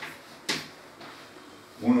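A single sharp tap of chalk striking a blackboard about half a second in, as a digit is written on the board.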